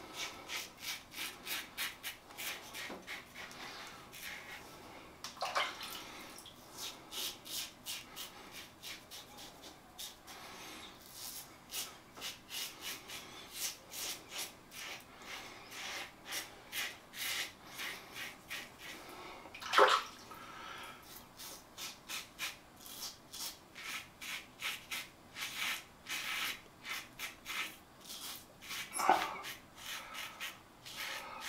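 Tatara Masamune titanium safety razor with a Gillette Red Stainless blade scraping through lathered stubble in rapid short strokes, on and on. A louder brief sound stands out about twenty seconds in and another near the end.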